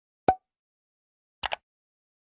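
Outro animation sound effects: one short pop about a quarter second in, then a quick double click, like a mouse clicking, about a second and a half in.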